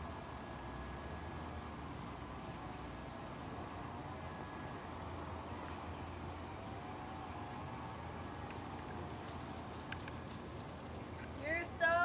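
Quiet outdoor background with a low steady hum and faint, wavering voice-like sounds, and a few small clicks near the end. Just before the end a woman's voice comes in loudly.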